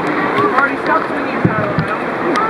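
Steady rush of river water with people's voices over it, and a couple of dull knocks in the second half.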